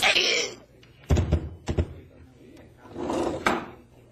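Radio-drama sound effects of a stabbing in a phone booth: two heavy thuds about half a second apart, a little over a second in, followed by a fainter, longer noise.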